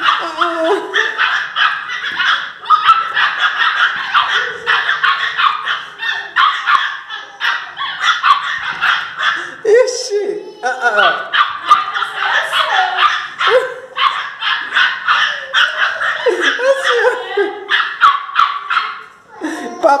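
Two pinschers, an adult and a puppy, barking at each other in rapid, nonstop bursts of angry yapping.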